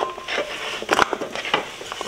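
Diced cucumber and green bell pepper pieces dropping into a bowl: an irregular scatter of light taps, the loudest about a second in.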